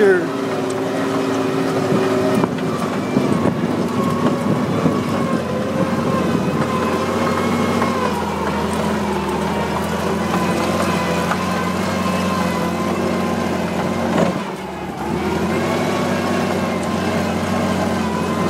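1942 Dodge WC21 weapons carrier's flathead six-cylinder engine running under way off-road, a steady drone. Its pitch steps down about halfway through, and the sound dips briefly near the end before it picks up again.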